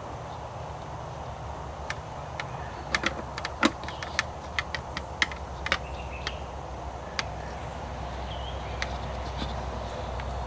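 Hard plastic clicks and taps from fingers working at the back of an aftermarket headlight assembly, a quick scatter of them between about two and six seconds in.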